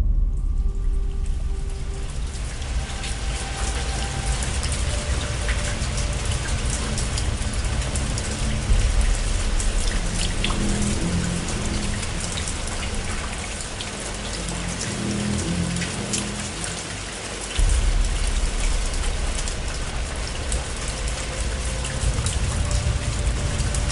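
Steady rain, a dense patter of drops over a deep low rumble, with faint music tones underneath. The low rumble steps up suddenly about three-quarters of the way through.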